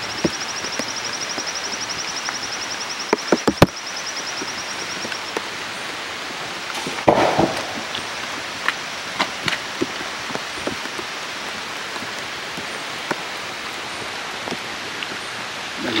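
Rainforest ambience: a steady hiss with a rapid high trill for the first five seconds or so, over scattered clicks, knocks and squelches of footsteps through oily mud and twigs. A louder rustling burst comes about seven seconds in.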